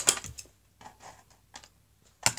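A quick run of sharp clicks in the first half-second, then a few faint ticks with quiet between.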